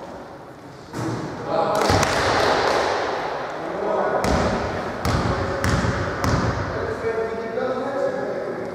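Basketball bouncing on a hardwood gym floor four times, about one and a half bounces a second, with players' voices in the echoing hall from about a second in.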